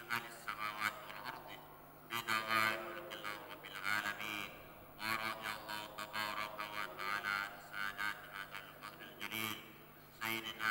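A preacher's voice chanting in Arabic, amplified through the mosque's loudspeakers, in long phrases broken by short pauses.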